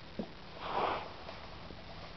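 A single short, breathy sniff through the nose, lasting about half a second, just under a second in.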